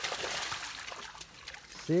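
Six trapped feral hogs stirring in a round wire cage trap on muddy ground: a steady rustling hiss with small clicks, a little louder in the first second.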